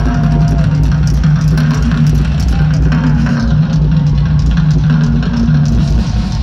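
Live rock drum kit played hard over a repeating low bass figure, with guitar in the mix, heard from the seats of a large arena.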